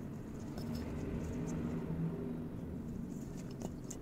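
Light clicks and scratches of fingers handling a thin jumper wire on a small circuit board's header pins, a few near the start and a cluster near the end, over a steady low background hum.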